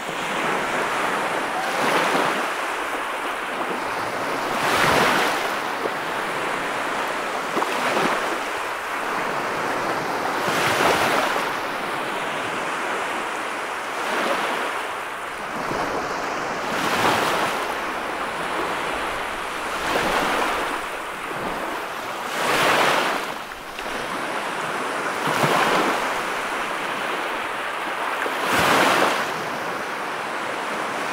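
Sea surf breaking and washing up a sandy beach: a steady wash of water that swells about every three seconds as each wave breaks.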